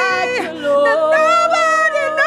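Two women singing a gospel worship song together over sustained electronic keyboard chords; a sliding vocal run about half a second in gives way to long held notes.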